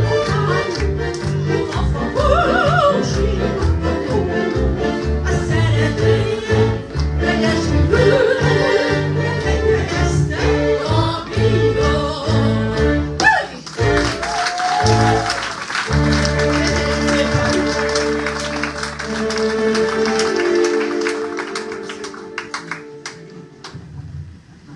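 A woman singing a Hungarian magyar nóta into a microphone over electronic keyboard accompaniment, ending with a big finish about 13 to 14 seconds in. A long held final chord follows under what sounds like audience applause, fading away near the end.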